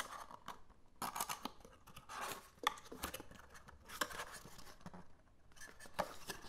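Paperboard carton being worked open by hand: the card scrapes and rustles in short bursts, with a few sharp clicks as the end flap comes free, and the card inner sleeve slides against the box near the end.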